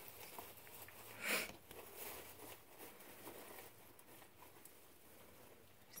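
Guinea pigs quietly rustling and chewing hay, with faint scattered clicks and one short, louder rustle a little over a second in.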